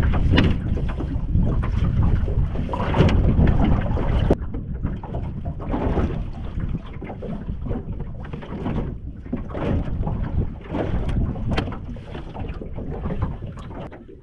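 Wind buffeting the microphone in a dense low rumble, with scattered knocks and bumps as fishing gear and the catch are handled in a small open boat.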